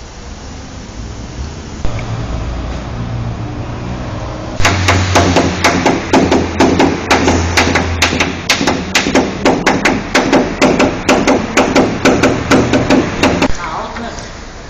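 Rapid run of light hammer taps on a tool held against the sheet metal of a car's roof edge, about four taps a second. They begin about four and a half seconds in and stop shortly before the end. This is paintless dent repair, tapping a dent out of the panel.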